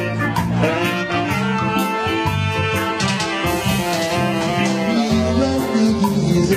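Live band playing an instrumental passage: guitar and keyboard over bass, with a steady beat of short high hits.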